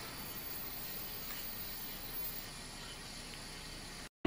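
Faint, steady hiss of television static, with a thin high tone running through it.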